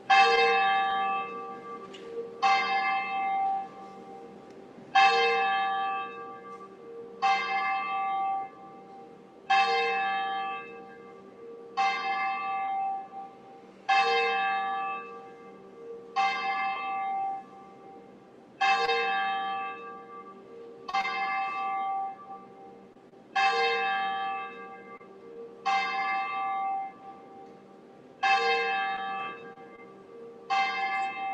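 A single church bell tolled slowly, about thirteen strikes at a steady pace of one every two and a half seconds or so, each ringing out and fading before the next. It is the call-to-worship bell that begins the service.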